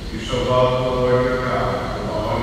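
A man's voice intoning in a chant-like monotone, holding steady notes of about a second, as a priest chants part of the liturgy over the church's microphone.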